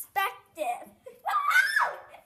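A girl's voice: a few short spoken sounds, then a long high-pitched squeal about a second in that rises and falls.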